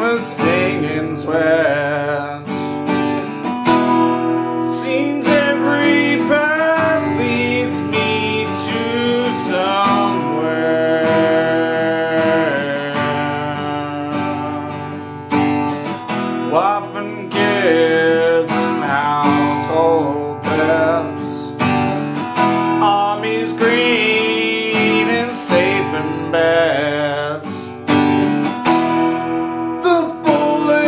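Epiphone acoustic guitar strummed in steady chords, with a man singing over it.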